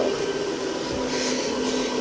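Steady running of a self-inflating Christmas inflatable's built-in blower fan: a constant whirring hum with a faint steady whine.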